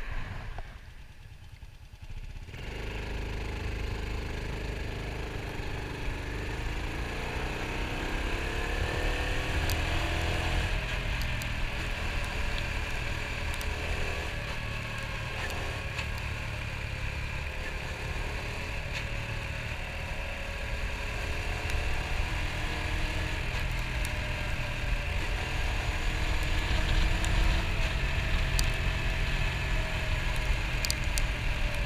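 Dual-sport motorcycle engine running under way, heard from the rider's seat with wind rushing over the microphone. It is quieter for the first couple of seconds, then climbs in pitch as the bike accelerates a few seconds later.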